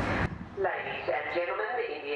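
A railway station public-address announcement starts about a quarter-second in, the voice thin and narrow as heard through the platform loudspeakers. Before it, a steady wash of outdoor noise cuts off suddenly.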